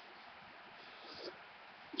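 Near silence: faint room hiss, with one brief faint sound a little over a second in.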